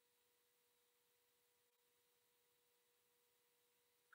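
Near silence, with only a very faint steady tone in the background.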